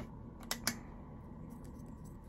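Three light clicks from a plastic makeup pen being handled as it comes out of its cardboard box: one at the start, then two close together about half a second in.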